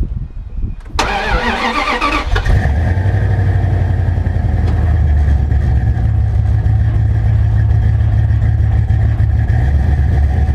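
Pickup truck engine cranked by the starter for about a second and a half, then catching and settling into a steady idle.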